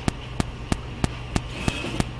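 Regular sharp clicking, about three clicks a second, over a steady low hum.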